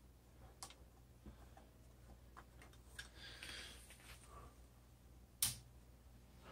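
Guitar cable jacks being pulled from and handled around a noise reducer pedal: a few faint clicks and one louder, sharp pop near the end, over a steady low amp hum.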